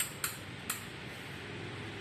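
Three light clicks, from a metal-and-rubber bicycle pedal being handled and turned by hand, within the first second. A faint steady background noise follows.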